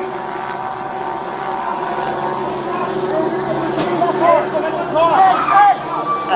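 A vehicle engine running and revving, its pitch climbing slowly. In the second half, indistinct voices rise over it and become the loudest sound.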